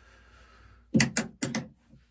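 A quick run of four or five clicks and knocks about a second in, from small objects being handled on a desk.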